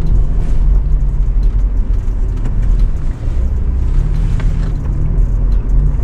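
Car driving slowly, heard from inside the cabin: a steady low rumble of engine and tyres, with a few faint knocks from the rough road.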